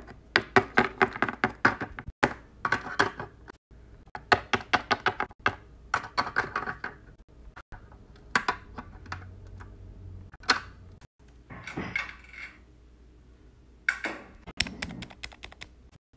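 Small plastic Littlest Pet Shop figurines tapped against a hard surface in quick runs of light clicks, the way the toys are made to walk.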